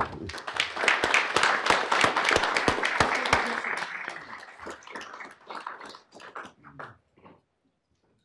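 A crowd applauding, dense for about four seconds, then thinning to scattered claps that stop about seven seconds in.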